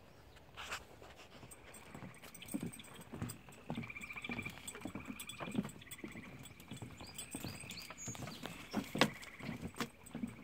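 Footsteps thudding irregularly on a wooden boardwalk, with a high trilling call repeated several times.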